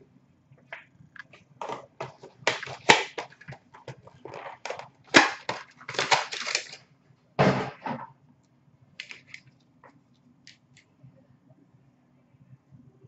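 Trading-card packs and cards being handled and opened by hand: a run of crinkling, crackling snaps and clicks, busiest in the first eight seconds, then a few faint clicks.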